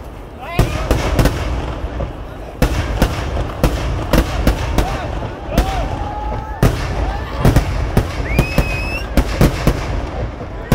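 Vedikkettu fireworks display: irregular bangs of firecrackers and aerial shells, several a second, over a continuous low rumble. After a brief lull at the start the bangs come thick and fast again.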